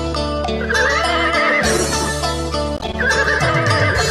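Band music opening a song, with a horse whinny sounding twice over it, about a second in and again near the end.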